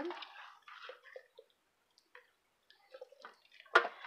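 Hands rubbing butter into the skin of a raw whole chicken in a stainless steel bowl: faint, scattered wet squishes, with one sharper click a little before the end.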